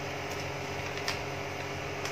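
Steady background hum with light hiss, and a faint click about a second in.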